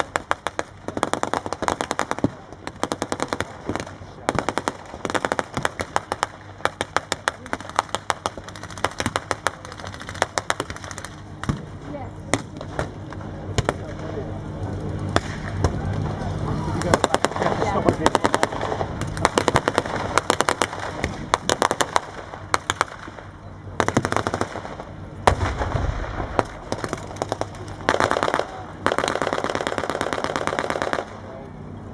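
Blank small-arms fire from a battle re-enactment: machine-gun bursts and single rifle shots cracking in quick succession throughout. A tank engine runs steadily underneath through the middle of the stretch.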